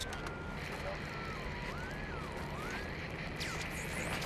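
CB radio static hissing, with a thin whistle that wanders up and down in pitch as the set is tuned, over the low steady drone of a car inside the cabin.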